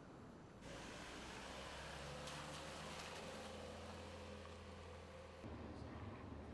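Faint outdoor background with a steady low mechanical hum, like an engine running, and a few light clicks in the middle. The sound changes abruptly near the end.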